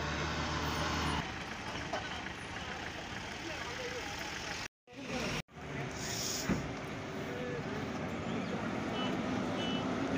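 Engines of a convoy of security-force vehicles, among them an armoured personnel carrier, running as they move along a gravel road, with voices in the background. The sound cuts out briefly about five seconds in.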